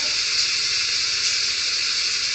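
Steady background hiss, even and unchanging, with no other sound.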